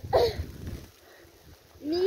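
A person's high-pitched wordless cries: a short one falling in pitch right at the start, and a rising one beginning near the end, with a low rumbling noise under the first.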